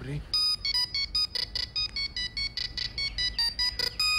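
Mobile phone ringtone: a fast beeping electronic melody of short notes, several a second, hopping between pitches, starting about a third of a second in.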